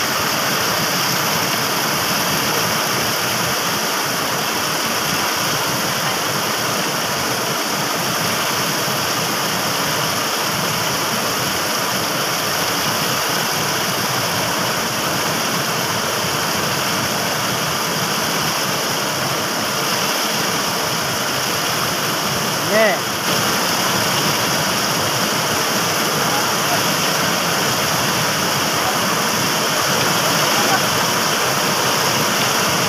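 Steady rushing noise of fast-flowing shallow water. About two-thirds of the way through there is one brief high squeak.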